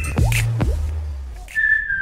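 Sound effects of an animated subscribe button: a few quick falling swooshes over a low hum that fades away. About one and a half seconds in, a whistled tune starts a background music track.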